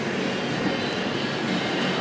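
Steady rumbling hiss of a hotel lobby's room noise, with no distinct sounds standing out.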